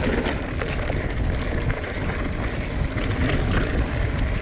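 Wind buffeting the microphone of a handlebar camera on a Giant Stance mountain bike rolling over a rocky dirt trail, with tyre crunch and scattered clicks and rattles from the bike over the rough ground.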